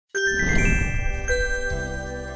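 Intro music jingle of bright chiming notes entering one after another, starting abruptly just after the start, with a low held chord coming in near the end.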